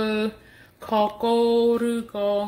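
A woman's voice: a short sound, then a long note held at an almost level pitch for about a second, more like drawn-out sing-song speech or chanting than ordinary talk.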